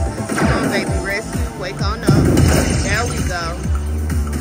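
Ultimate Fire Link slot machine's bonus-round music and chiming sound effects during the fireball respins, with many quick rising and falling electronic tones. It gets loudest about two seconds in, with a deep hit as the reels stop and new fireballs land.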